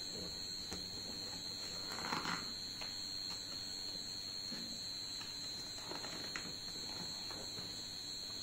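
A steady high-pitched electronic whine, with faint rustling and light taps from a child turning the page of a picture book, the clearest rustle about two seconds in.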